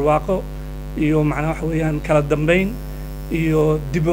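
A man talking, with a steady low electrical mains hum running under his voice throughout.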